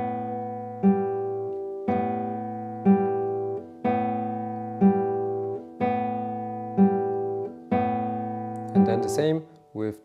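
Nylon-string classical guitar's open strings plucked slowly and evenly, about one stroke a second. Each stroke sounds a thumb bass note together with a finger's treble note, and each rings on into the next.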